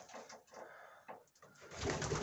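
Domestic pigeons cooing faintly.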